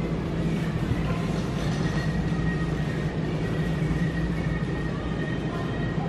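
Steady low hum and rumbling noise of a large store's interior, heard while walking through the aisles, with a faint thin steady tone in the middle.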